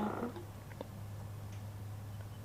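A pause in a woman's speech: her voice trails off at the very start in a short, rough breathy sound, leaving only a steady low hum in the background.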